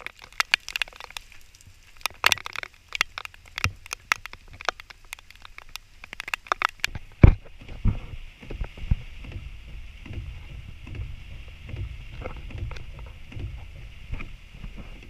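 Heavy rain, with many irregular sharp drops splattering close to the microphone. About seven seconds in this gives way to the steady low rumble of a car's cabin in the rain.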